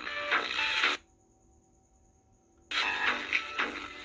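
Rhythmic music from a phone, broadcast by a small homemade FM transmitter and played through a Waxiba pocket AM/FM radio's small speaker. It stops about a second in, leaving near silence for about a second and a half, then starts again.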